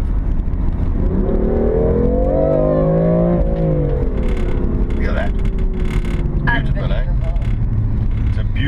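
BMW M4's twin-turbo straight-six heard from inside the cabin, rising in pitch as the car accelerates for about two seconds, then falling away as it eases off, and settling to a steady cruise over constant road rumble.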